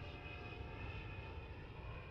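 Very faint tail of the song after its last note: a low rumble with a few thin lingering tones, slowly fading.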